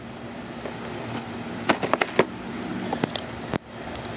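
A steady background hum with a quick cluster of sharp clicks about halfway through and one or two more clicks a second later. The hum cuts out suddenly near the end and comes back.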